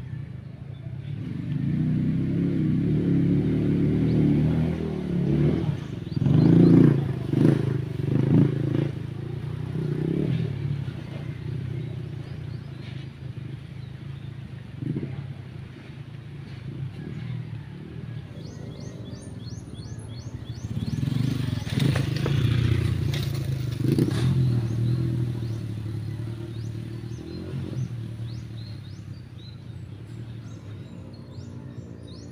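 A trail motorcycle engine running and revving out of view, getting louder and fading as it rides around, loudest about a quarter of the way in and again about two-thirds through. A bird chirps in quick repeated notes in the quieter stretch between.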